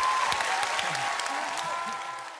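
A studio audience applauding with some cheering voices, slowly dying down.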